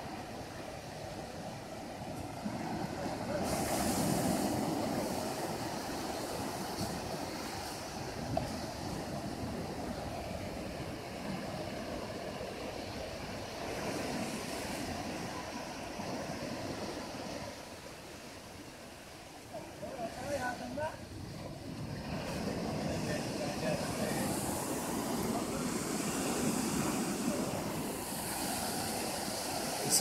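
Small waves breaking and washing up a sandy shore, the surf swelling and fading in slow surges. Faint voices come through briefly about two-thirds of the way in.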